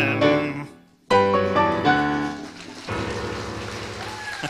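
Yamaha digital piano playing the closing bars of a song. The first chord dies away into a brief gap about a second in. Then a loud chord and a few falling notes lead to a quieter held final chord.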